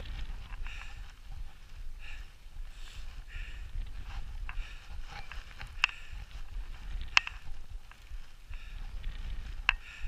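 A roped mountaineer climbing a steep snow track: slow, soft steps of boots in packed snow, with three sharp clinks of metal climbing gear, about six, seven and just under ten seconds in, over a low steady rumble.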